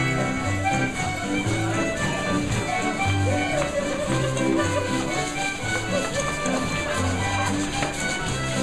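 Live contra dance band playing a dance tune: fiddles carry the melody over keyboard and guitar backing, with a steady bass beat.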